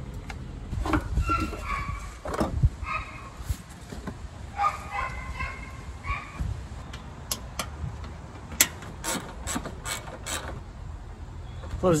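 Hands working in an engine bay: squeaks while the power steering reservoir cap is handled and parts are moved, then a run of sharp clicks and knocks, over a steady low rumble.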